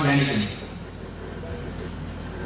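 Insects chirping steadily in the background, heard through a pause after a man's voice trails off about half a second in.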